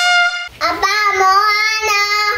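A short bright musical note from an edited-in sound effect, then a child's high, drawn-out sing-song voice calling in Korean, 'Daddy, what are you doing?'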